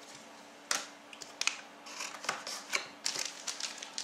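Foil trading-card pack wrapper crinkling and cards being handled: a run of small crackles and clicks that starts a little under a second in.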